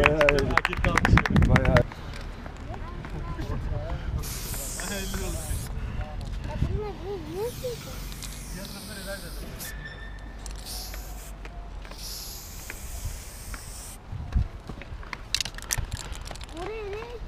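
A group of people laughing loudly for the first two seconds. Then an aerosol spray-paint can hisses in four separate bursts of a second or two each as paint is sprayed onto a concrete ramp wall.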